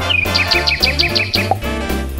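Upbeat background music with a bouncing bass line and a steady beat, overlaid with a cartoon bird-tweet sound effect: a quick run of high chirps, several a second, that stops a little over a second in.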